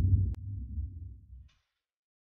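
Low, throbbing rumble of a cinematic logo sting fading out, with one sharp click about a third of a second in, then dead silence from about one and a half seconds in.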